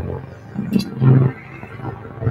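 Low, growling pitched sound from a live laptop electronic performance, swelling twice in short bursts.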